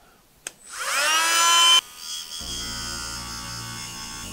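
Cordless mini rotary tool switched on with a click, its motor whine rising as it spins up to a steady high speed. Just before two seconds the sound drops abruptly to a quieter, steady whirr with a low hum as the 800-grit sanding disc is run against a steel wrench.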